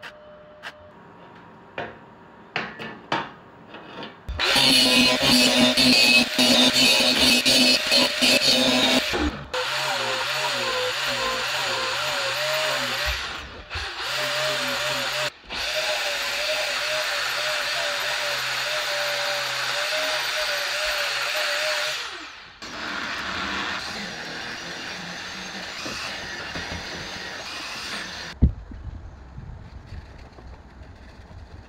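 Stick-welding arc on thin stainless steel tube, crackling in short tack bursts for the first few seconds and then steadily for about five seconds. Then an angle grinder grinds the tack welds flush, its whine wavering under load, with two short stops and a quieter last stretch.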